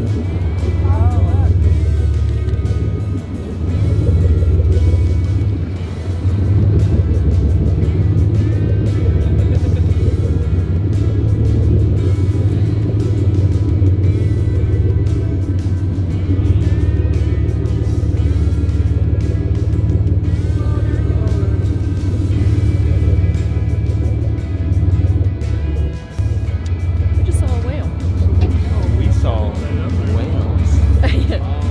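Tour boat's engine running with a steady low rumble, under indistinct voices and background music.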